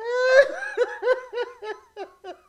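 A person laughing hard: a high, rising whoop, then a quick run of ha-ha pulses, about six a second.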